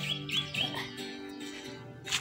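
Guitar played by a learner, its notes ringing on, while a bird calls a quick run of short chirps, about five a second, that stops under a second in.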